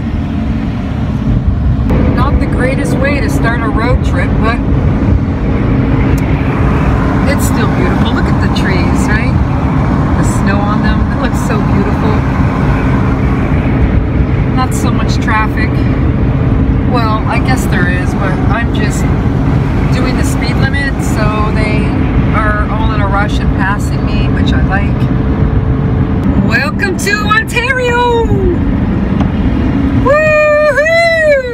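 Steady road and engine rumble inside a van driving on a wet, slushy highway. Short, high, wavering voice-like sounds come and go over it throughout.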